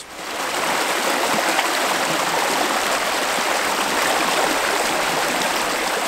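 Small woodland stream running over stones: a steady rushing of water that comes up within the first half second and then holds even.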